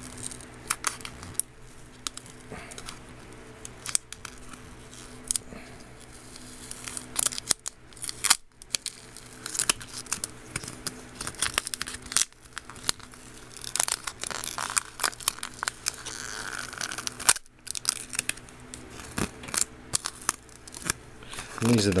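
An adhesive label and plastic wrap being peeled by hand off a UPS battery pack: irregular crackling, tearing and crinkling with small clicks throughout.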